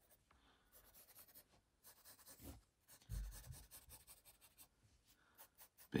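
Pencil sketching on sketchbook paper: faint, quick, scratchy strokes as fuzzy fur is drawn in. There is a soft low thump about three seconds in.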